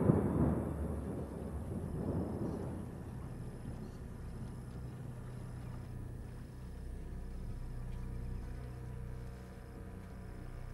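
A deep roll of thunder breaks out at the start, swells again about two seconds in, and fades over about three seconds. A steady low drone of the tour boat's motor carries on under it and after it.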